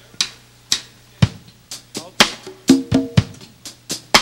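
Live band starting a song: drum strokes at about two a second open it, and from about halfway through the band's pitched instruments join in with short, punchy notes on the beat.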